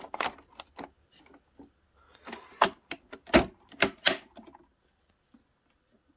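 Handling of a Bosch Tassimo pod coffee machine: a glass mug set on its plastic drip tray and the machine's parts clicked and knocked, a run of a dozen or so separate sharp clicks with the loudest ones a little past halfway.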